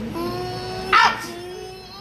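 A woman's held, moaning cry, broken about a second in by a sharp, loud cry that rises in pitch, then moaning again.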